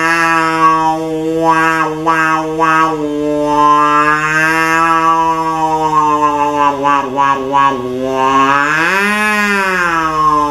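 A steady, low, buzzing drone sounded through a drinking straw into cupped hands. As the hands close and open, its overtones sweep up and down in a wah-like way, with a few quick flutters. Near the end the pitch bends up and back down.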